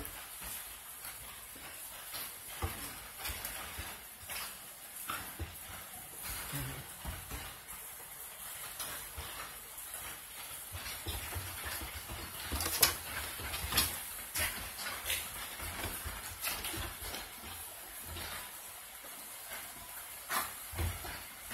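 Two huskies play-wrestling: scuffling bodies, paws and claws on a dog bed and wooden floorboards, with irregular knocks and thumps, the sharpest about 13 seconds in. A steady hiss of rain runs underneath.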